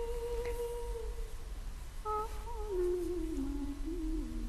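A voice humming a slow melody. One long held note fades out about a second in, and after a brief pause a new phrase wavers and then steps down in pitch.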